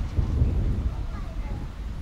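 Uneven low rumble of wind buffeting the microphone, with faint distant voices.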